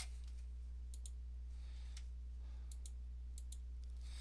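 A handful of faint computer mouse clicks, some in quick pairs, over a steady low hum.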